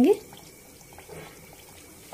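Strips of mathri dough frying in hot oil in a steel kadhai: a faint, steady sizzle.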